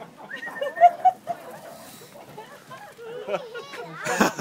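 Meerkats giving short, high-pitched squeaking calls, loudest twice about a second in, over indistinct human voices.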